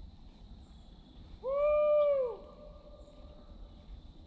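A hound gives one long bawl of about a second, rising quickly in pitch, holding, then sliding down at the end and trailing off faintly.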